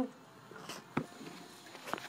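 Handling and movement noise from a phone being carried: a few soft knocks and rustles, the clearest about a second in and another near the end, over a quiet background.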